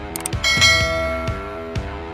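A bright bell-like ding, the sound effect of a subscribe-button and notification-bell animation, struck about half a second in and ringing for about a second over background music with a steady beat.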